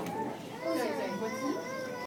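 Children's high-pitched voices chattering and calling out, several at once, louder from about halfway through.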